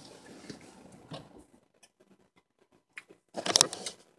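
A car's faint running noise fades out over the first second and a half as it is parked, leaving near quiet with a few faint ticks. Near the end comes a short cluster of sharp clicks and rubbing close to the microphone.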